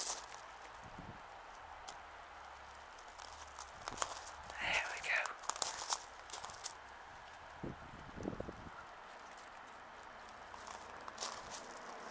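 Footsteps crunching on gravel, with a few scattered clicks. Under them runs a faint low rumble of distant road traffic, which fades out about two-thirds of the way through.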